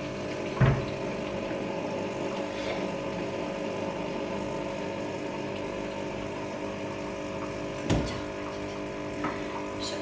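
Steady electric buzz of a home espresso machine's pump running while coffee is made. Single knocks sound about half a second in and near 8 s.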